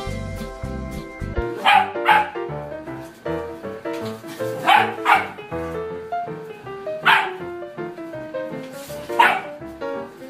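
A dog barking six times: two pairs of barks about two and five seconds in, then single barks near seven and nine seconds, over background music.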